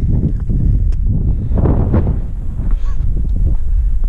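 Wind buffeting the microphone in a steady low rumble, with a hiker's heavy, rough breathing in the thin air at about 12,000 feet, loudest around the middle.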